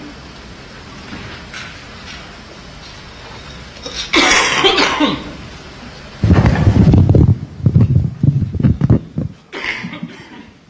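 Microphone handling noise: a loud rustle about four seconds in, then a run of heavy thumps and rumbles over about three seconds as a microphone is knocked and shifted.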